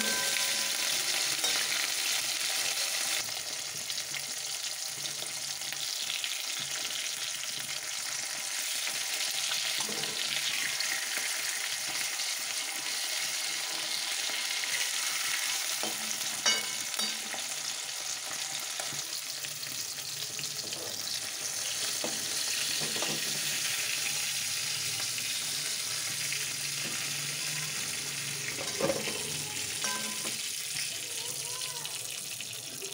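Khoira fish frying in hot oil in a wok with a steady sizzle. A metal spatula clicks against the pan a few times, most sharply about halfway through and again near the end.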